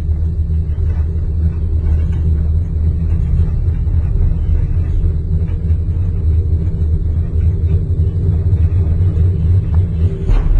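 Steady loud low rumble inside a moving gondola cabin, with a faint steady hum above it.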